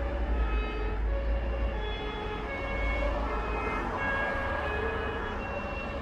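A distant emergency-vehicle siren sounds, stepping back and forth between two tones about every half second, over a steady low rumble.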